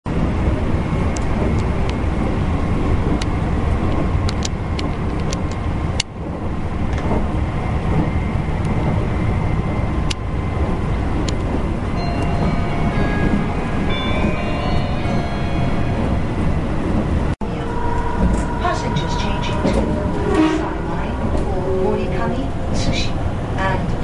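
Interior running noise of a Meitetsu 2200 series electric train: a steady rumble from the wheels and running gear, with scattered clicks. In the second half, steady tones come in and shift in pitch in steps.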